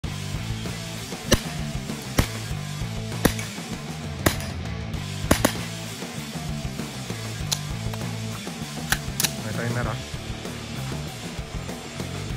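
Nine shots from a JP GMR-15 9mm pistol-calibre carbine at uneven intervals, including two quick double shots, over background music.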